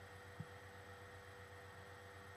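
Near silence: a low steady electrical hum, with one faint soft knock about half a second in.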